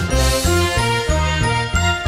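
Opening theme music of a TV news bulletin: held high notes over a bass line that steps from note to note.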